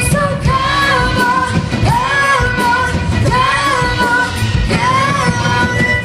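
Live rock band: a woman singing long, gliding notes over electric guitar, electric bass and drums.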